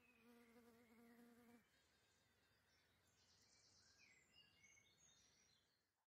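Near silence: a faint buzzing hum for about the first second and a half, then faint short high chirps toward the end.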